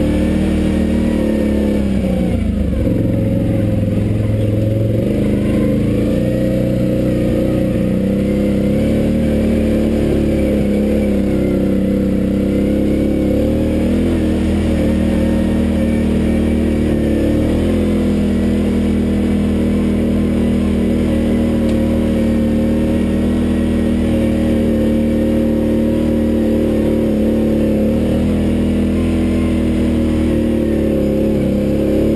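Off-road vehicle engine running hard along a dirt trail, its pitch rising and falling as the throttle opens and closes.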